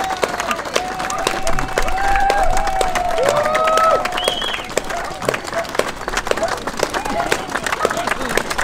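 A small outdoor crowd clapping and cheering, with voices calling out in long shouts over the clapping.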